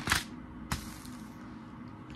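Thin Bible pages being flipped by hand: a brief paper rustle at the start and a second, sharper flick under a second in.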